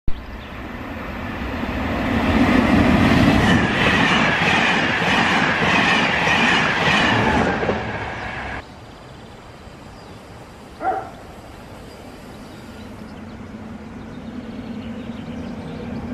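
A train passing close by with loud rumbling and rhythmic wheel clatter, cut off suddenly about eight and a half seconds in. After a quieter stretch with one short tone near eleven seconds, a regional passenger train is heard approaching, growing louder towards the end.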